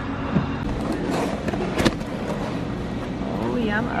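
Steady car noise, with one sharp click a little under two seconds in.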